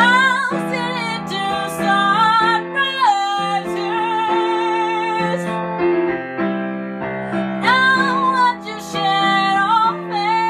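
A woman singing a slow melody with long held notes and vibrato, accompanied by chords played on a keyboard piano.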